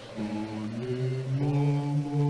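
Low male voices singing a slow chant in harmony, holding long notes; a deeper voice comes in about a second in.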